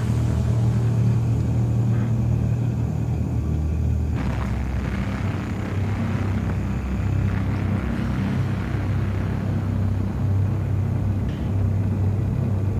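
A steady low rumble that continues without a break through the whole stretch, with no clear events on top of it.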